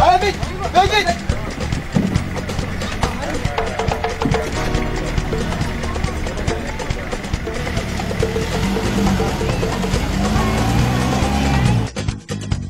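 Men's voices calling out over background music, with a pickup truck's engine running underneath. The sound cuts off abruptly at the end.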